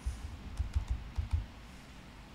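Laptop keyboard keys being typed: a quick run of about six keystrokes, entering a password.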